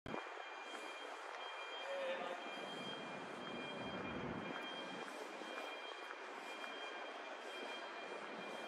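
City street ambience: a steady wash of distant traffic noise, with a low rumble that swells and fades near the middle, and a thin steady high whine underneath.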